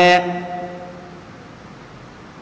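A man's voice holding the last syllable of a spoken phrase, fading out within the first second, then low steady room noise.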